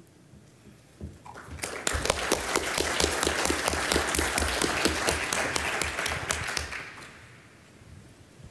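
Audience applauding at the end of a talk: the clapping starts about a second in, swells quickly, holds, and fades away near the end.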